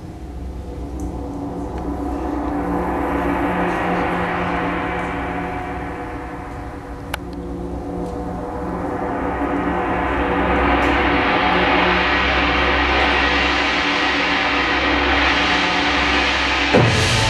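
Large orchestral gong (tam-tam) rolled so that it swells up to a bright shimmer, ebbs, then swells again louder from about eight seconds in and keeps ringing, over low held notes underneath.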